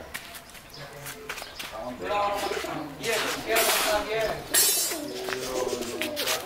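Domestic pigeons cooing, with a short rustle a little past the middle.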